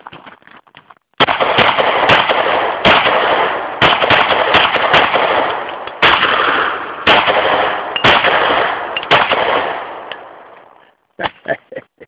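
Two pistols fired together akimbo in one long, rapid string of shots, starting about a second in and stopping about ten seconds in; the shots follow so fast that they run together with hardly a gap.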